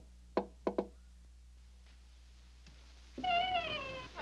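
Three quick knocks on a wooden door in the first second. Near the end comes a short, pitched, wavering tone that falls slightly.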